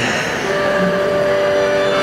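Accordion playing sustained, held chords, with new notes entering about half a second in.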